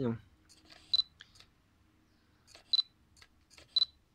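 Fujifilm X-Pro1 with an XF 35mm f/1.4 lens autofocusing: faint clicks of the lens focus motor, and a short high beep three times (about a second in, near three seconds and near the end) as focus locks.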